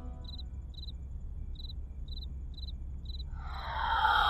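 Crickets chirping in short bursts, about six chirps spread unevenly, over a low steady hum of film ambience. Near the end a swelling sound rises in.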